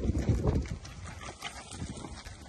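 Brahman-type cattle milling in a yard, their hooves thudding and shuffling on dry dirt, busiest in the first half second or so and lighter after.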